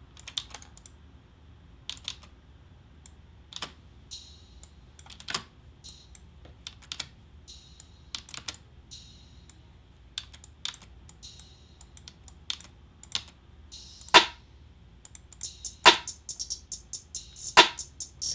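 Irregular clicks of a computer keyboard and mouse, sharper and more frequent near the end. Under them, faint playback of a beat whose hi-hats carry reverb.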